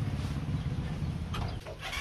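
A low steady rumble that stops about one and a half seconds in, with a short animal call near the end.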